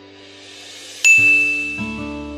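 A notification-bell sound effect: a short rising whoosh, then a single bright bell ding about a second in that rings out and fades.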